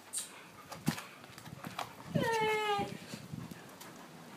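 A pit bull giving one drawn-out, slightly falling whine about two seconds in, with a few faint clicks around it.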